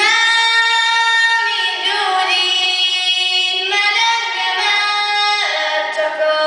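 A young female solo singer sings a Hungarian folk song unaccompanied, holding long notes that step from pitch to pitch. A new phrase begins right at the start, after a breath.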